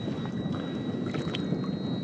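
Water splashing and sloshing as a hooked snapper thrashes at the surface beside a kayak, with wind on the microphone.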